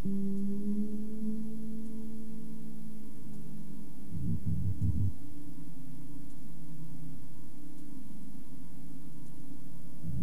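Ambient synthesizer music: a steady low drone tone with a fainter higher tone above it. A low, rapid throbbing pulse joins for about a second just after the four-second mark.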